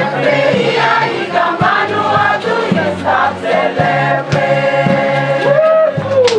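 A group of women singing a song together in chorus, over a bamboo band's low notes and beats. In the second half the voices hold one long note.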